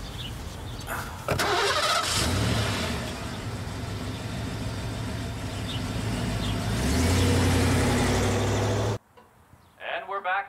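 A car door shuts with a knock. About a second in, the red Audi A5 coupe's engine starts with a sudden jump in level and a short rise in revs, then settles to a steady run. From about six and a half seconds in the revs climb and it gets louder as the car pulls away, until the sound cuts off abruptly near the end.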